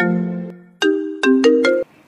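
Mobile phone ringtone playing a short tune of quick melodic notes. After a brief gap the tune starts again, then cuts off suddenly near the end as the call is answered.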